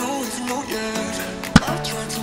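Upbeat background music, with a single sharp pop and splat about three-quarters of the way through as a liquid-filled balloon bursts.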